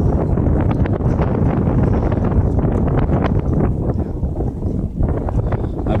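Wind buffeting the camera's microphone: a loud, steady low rumble with irregular gusty crackles.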